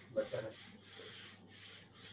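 Handheld board duster wiping marker ink off a whiteboard in quick back-and-forth strokes, about two a second.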